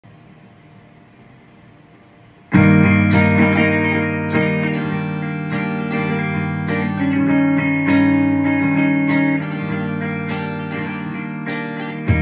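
Faint hiss, then about two and a half seconds in a clean electric guitar starts playing a picked melody over a backing track with a steady beat.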